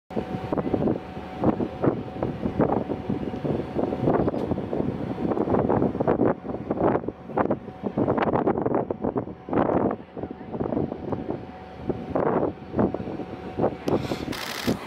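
Wind buffeting the camera microphone in irregular gusts, over a faint steady hum.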